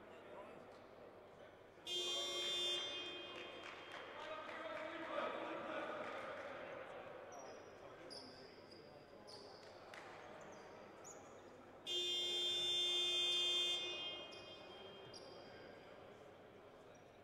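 Basketball scoreboard buzzer sounding twice, a short blast about two seconds in and a longer one of about two seconds around twelve seconds in. It signals the end of a timeout.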